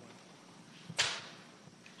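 Quiet room tone of a meeting-room sound system, broken about a second in by one brief, sharp swish of noise.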